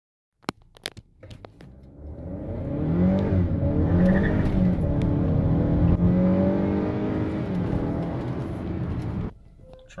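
Honda Accord 2.0T's turbocharged four-cylinder engine accelerating hard from a standstill, heard from inside the cabin. The engine note climbs and drops back at each upshift of its automatic gearbox. A few sharp clicks come before the engine builds, and the sound cuts off abruptly near the end.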